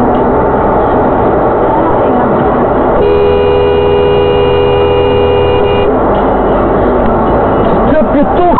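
Dashcam audio recorded inside a moving car: steady engine and road noise, with a car horn held for about three seconds starting about three seconds in.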